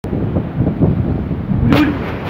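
Heavy surf breaking on a rocky shore: a deep, continuous rumble of waves, with a sudden sharper crash near the end as a big wave slams into the rocks and bursts into spray.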